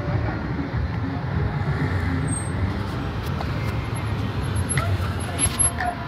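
Steady low rumble of road traffic and cars, with faint voices in the background and a few sharp clicks near the end.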